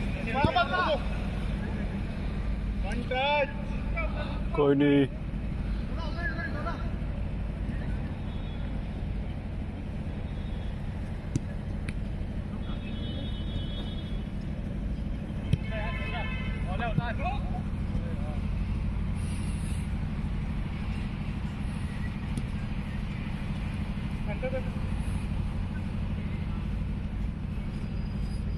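Footballers shouting to each other across an outdoor pitch during play, with a few sharp knocks of the ball being kicked. A steady low hum runs underneath.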